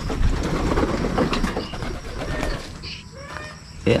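Racing pigeons cooing in their loft over a low, steady rumble.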